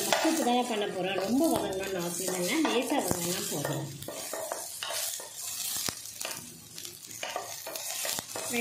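Chopped onions sizzling in oil in a stainless steel pan as a wooden spatula stirs them, scraping and tapping on the pan. A wavering, voice-like pitched sound runs in the background for the first three seconds.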